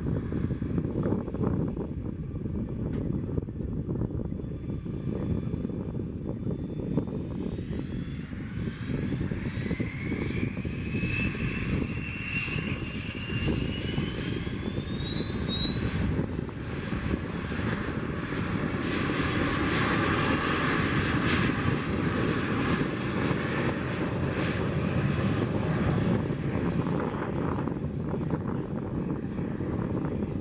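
Cessna Citation CJ3+ business jet's twin Williams FJ44 turbofans spooling up for takeoff. A whine climbs in steps from about eight seconds in and levels off high around the middle, then holds over a steady roar as the jet runs to takeoff power.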